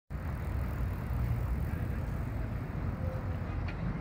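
Steady low rumble and hiss of open-air riverside ambience, the sort made by wind on the microphone and distant city traffic, with no clear single event in it.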